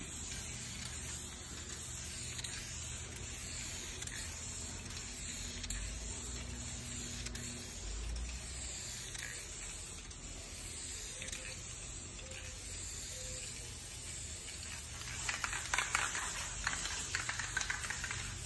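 An aerosol spray paint can hissing as paint is sprayed, getting louder and more uneven for the last few seconds.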